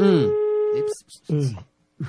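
Steady telephone line tone, a single held pitch, as a phone call is placed; it cuts off about a second in, and a brief voice follows.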